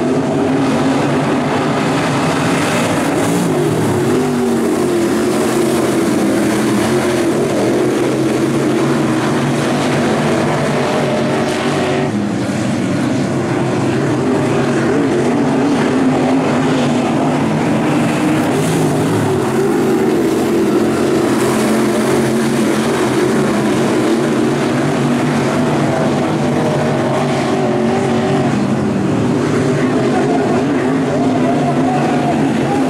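A pack of 604 crate late model race cars, each with a small-block V8, running at racing speed on a dirt oval. The engines keep up a loud, steady mass of sound, and their pitch keeps rising and falling as the cars throttle through the turns and down the straights.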